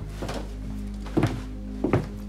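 Background music with steady held tones, and two heavy footsteps, one a little over a second in and one near the end, at a walking pace.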